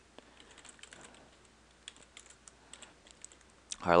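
Faint typing on a computer keyboard: scattered key clicks at irregular spacing, a few a second.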